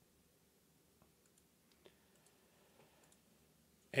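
A few faint, sparse clicks of a computer mouse, the loudest a little under two seconds in, over quiet room tone.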